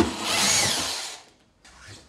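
Cordless drill-driver backing a screw out of a drawer slide, running in one burst of about a second before it stops.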